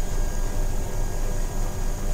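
Steady background noise: a low rumble with a hiss over it, unchanging throughout.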